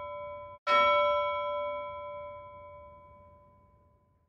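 A bell ringing with several clear tones. The ring of the previous stroke cuts off abruptly just over half a second in, and a new stroke follows at once, fading away over about three seconds.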